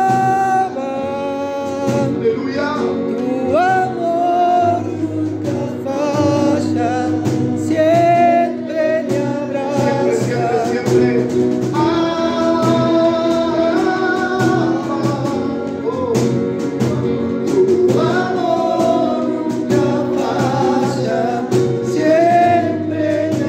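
A man singing a Spanish worship song into a microphone, accompanying himself on a Roland E-X20A keyboard, with held and sliding vocal notes over sustained keyboard chords.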